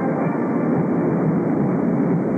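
Marching band music in a gymnasium, on old camcorder tape: a dense, muffled wash of sound with the high end cut off.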